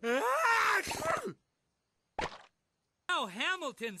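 A cartoon beast's loud, drawn-out vocal outburst, falling in pitch and ending in a low groan, followed a little after two seconds in by a single short knock.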